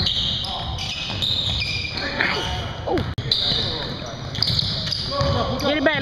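Basketball game on a hardwood gym floor: the ball bouncing and sneakers squeaking in short chirps, twice near the middle and in a cluster near the end, over the gym's background noise.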